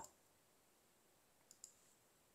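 Near silence with two faint, quick computer-mouse clicks about one and a half seconds in.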